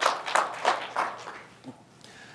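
Audience applause dying away, down to scattered claps that fade out within about a second.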